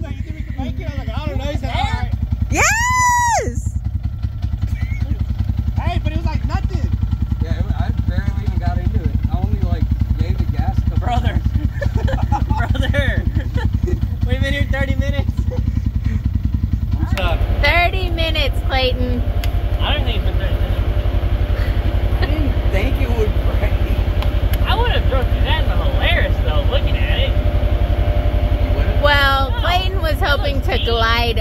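A vehicle engine idling steadily under people talking, its note growing steadier and more pitched from about halfway in.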